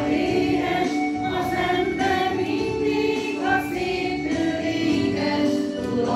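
A small choir, mostly women's voices, singing a song with long held notes.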